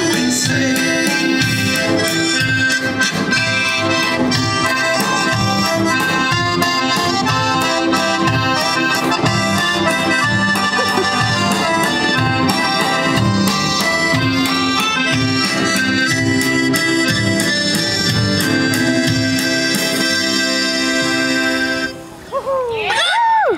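Live acoustic band led by accordion, with upright bass, a drum kit and acoustic guitar, playing a lively tune with a steady beat.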